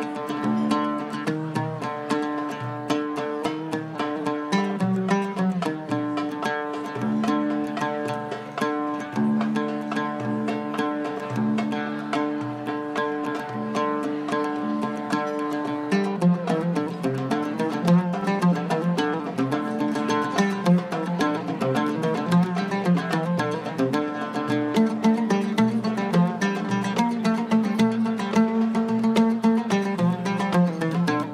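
An Arabic oud playing a melody of quick plucked notes. About halfway through, the playing changes to a busier, more strongly accented passage.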